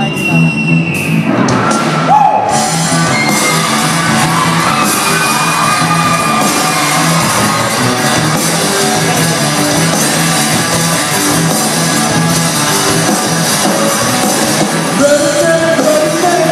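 Live rock band playing loud in a large hall, with drums, electric guitars and a singer. The full band comes in about two seconds in and carries on dense and loud.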